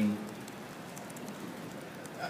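A pause in speech: a steady low hiss of room tone, with no distinct sound events.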